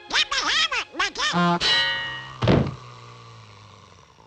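Donald Duck's garbled squawking voice, in quick rising and falling bursts for about a second and a half, then a held musical note and a loud cartoon thunk just past halfway, which rings and fades away.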